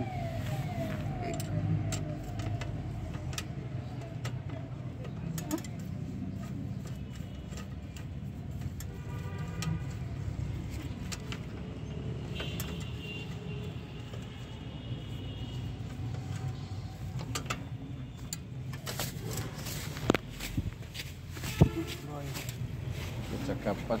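Scattered metallic clicks and taps of a spanner working on a bicycle pedal, with two sharper knocks near the end. A low steady hum and faint voices sit underneath.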